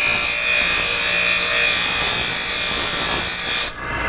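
Bench grinder's flap disc grinding a 30 mm cartridge case, which turns out to be stainless steel, taking the weathered patina down to bare, shiny metal. It is a steady, loud hiss of abrasive on metal that stops suddenly near the end.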